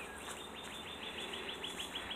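A songbird singing a long, even series of quick, high, downward-slurred notes, about seven a second.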